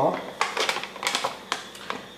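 Plastic protein powder sample sachet crinkling and crackling in the hand as it is shaken about, in a run of irregular sharp crackles.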